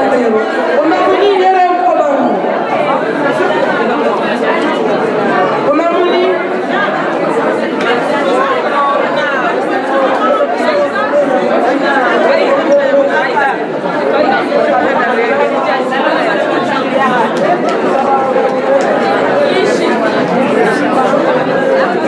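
Many voices talking at once in a large, echoing hall: loud, steady crowd chatter with no single voice standing out for long.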